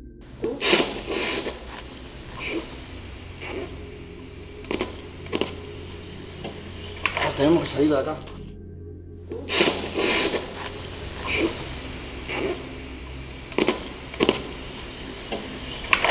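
A few seconds of handheld night recording looped twice, each pass starting after a moment of dead silence. Each pass holds a voice saying 'tenemos que salir de acá' among sharp handling clicks and a steady high electronic whine, and the voice is presented as a psychophony (EVP).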